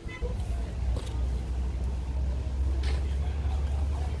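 Steady low rumble of outdoor road traffic, with faint voices of people in the background.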